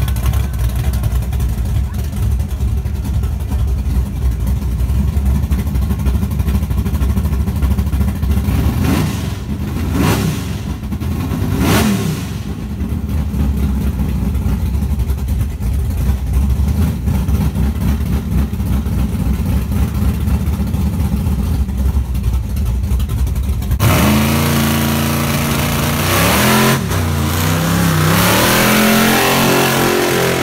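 A big-rim donk's engine idling with a heavy low rumble at the starting line, with two short revs partway through. Near the end it launches, the engine note climbing hard and dropping back twice at gear shifts as the car accelerates away.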